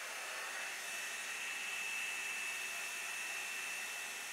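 Revlon One Step dryer brush running on its low setting: steady fan and air noise with a thin high whine held through it.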